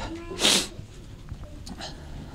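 A man's single short, sharp breath noise into a handheld microphone about half a second in, followed by low room noise.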